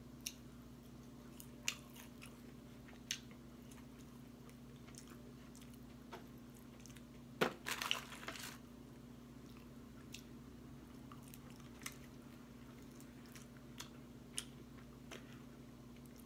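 Close-up chewing of crispy fried chicken wings, with sparse crunches and mouth clicks every second or two. About halfway through, a louder burst of crunching and rustling as fingers tear into the fried food in a foam takeout box. A faint steady low hum underneath.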